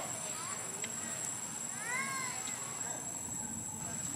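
Baby macaque crying: one rising-and-falling cry about two seconds in, with a few fainter short calls around it.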